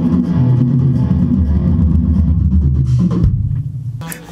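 Electric bass and guitar playing a heavy, low riff together, the notes dying away about three seconds in.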